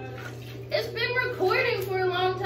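High-pitched wordless vocal sounds, rising and falling in pitch, beginning a little under a second in, over a steady low hum.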